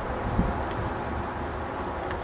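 Wind on the microphone: a steady, even low rumble and hiss with no distinct events.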